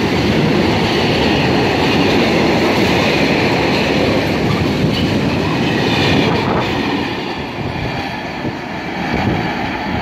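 Loaded bogie oil tank wagons rolling close past on steel rails, the wheel and rail noise dropping away about seven seconds in as the last wagon goes by and draws off.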